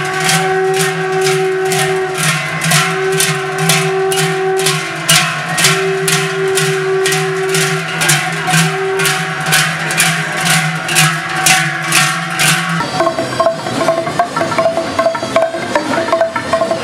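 Large cowbells worn on the backs of joaldunak clanging together in a steady rhythm, about two clangs a second, with the bells ringing on between strokes. Near the end this gives way to a txalaparta: wooden planks beaten with upright sticks in quick knocks.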